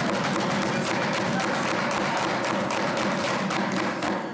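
Members of the legislature pounding their desks in applause: a dense, rapid patter of many wooden thumps that holds steady and thins out near the end.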